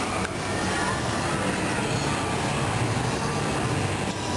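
Steady noise of a gas-fired glory hole (glass reheating furnace) burner running while a glass piece on a blowpipe is held inside it.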